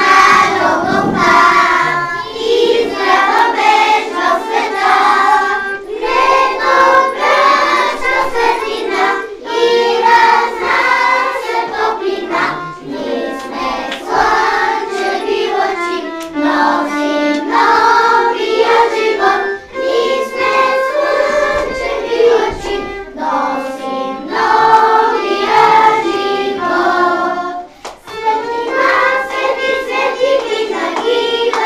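A group of young children singing a song together, with a violin playing along. There is a short break between sung phrases near the end.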